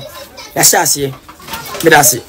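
A man's voice speaking in short bursts separated by brief pauses.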